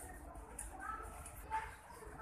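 Indistinct voices of other shoppers in a store, with one short, louder high-pitched voice-like sound about one and a half seconds in.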